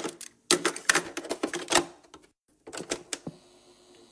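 Bursts of rapid, dense mechanical clicking and clatter, typewriter-like, each lasting up to about a second and a half with short silent gaps between. Near the end the clatter gives way to faint ticking with steady low tones.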